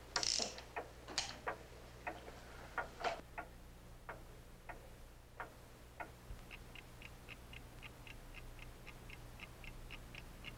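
Irregular clicks and knocks for the first six seconds, then a wall clock ticking steadily, about two and a half ticks a second.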